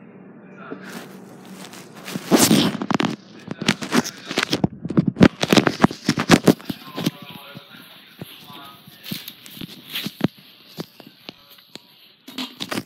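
Crackling and rubbing handling noise from a phone's microphone being covered and pressed against something, dense and loud from about two seconds in to about seven, then fainter scattered crackles.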